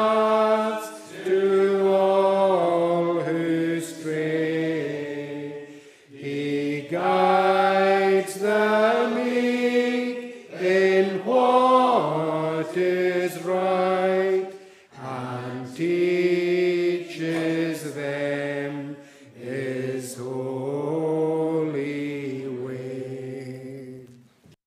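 Congregation singing a metrical psalm unaccompanied, in slow, long-held notes, phrase by phrase with a short pause between lines. The singing ends just before the end.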